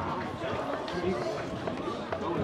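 Indistinct, overlapping voices of players and spectators at an outdoor football pitch, talking and calling out, with no clear words.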